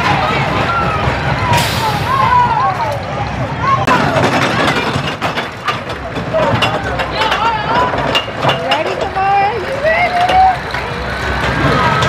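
Small kiddie coaster train running, its wheels clicking on the track, under riders' wavering shrieks and yells. A short hiss comes about a second and a half in.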